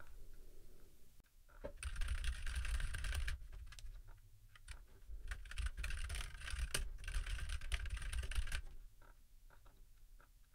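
Typing on a computer keyboard: two quick runs of keystrokes, with a few single key clicks between and after.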